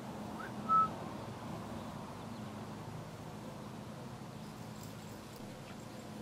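A short whistle about a second in: a quick rising chirp, then one brief steady high note. After it there is only a faint steady outdoor background hiss.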